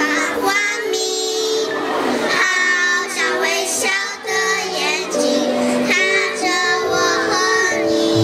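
A group of young children singing a song together through microphones, with long held notes.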